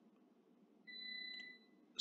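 Mostly near silence, with a faint, steady high electronic tone lasting under a second in the middle.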